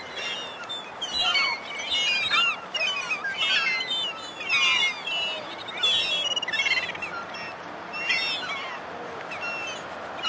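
A large flock of gulls calling: many short, overlapping cries, swelling into louder bursts about once a second.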